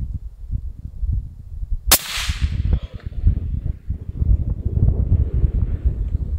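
A single shot from a suppressed bolt-action rifle about two seconds in: one sharp crack with an echo trailing off for about a second.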